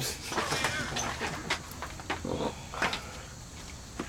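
Faint, indistinct voices of people talking in the background, with a few short sharp clicks, one about a second and a half in and another near three seconds.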